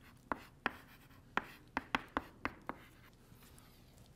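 Chalk tapping and clicking on a blackboard as an equation is written: about eight sharp, short strokes over the first three seconds, the last about three seconds in.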